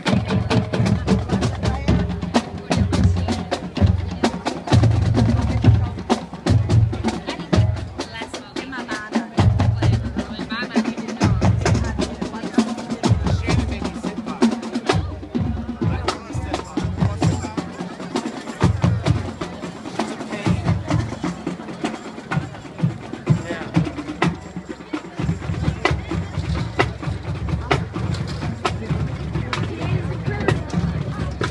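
Marching band drumline playing a marching cadence: fast, sharp snare strokes over bass drum beats that come in repeating groups.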